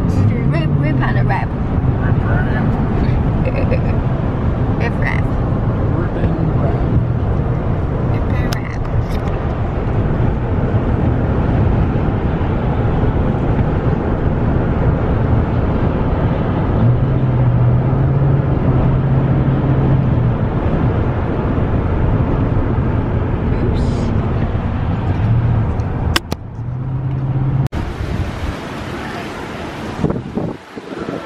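Steady road and engine noise inside a car cabin at highway speed, with a low hum that swells now and then. Near the end it cuts off abruptly and gives way to wind buffeting the microphone.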